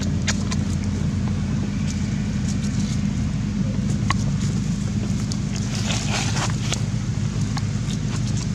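A steady low motor drone, engine-like, runs throughout. Brief clicks and a short burst of rustling come about six seconds in.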